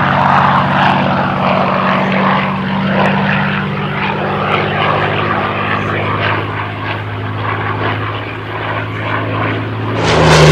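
Supermarine Spitfire Mk.IX's Rolls-Royce Merlin V12 engine and propeller, a steady drone as the fighter flies a banking pass overhead. It fades a little toward the end as the aircraft draws away.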